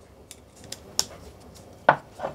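Small clicks and taps of a screwdriver and screw against a 3D-printed plastic part holding nuts as the screw is started, with a sharper click about a second in and a louder knock near the end.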